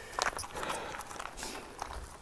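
Footsteps crunching on a loose dirt-and-gravel track, with irregular clicks and scuffs, as a road bike is walked uphill.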